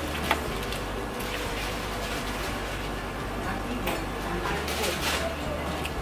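Restaurant room sound while two people eat: a steady low hum under faint background voices, with a sharp click near the start and a few brief clinks and rustles of food being handled in paper-lined baskets around four to five seconds in.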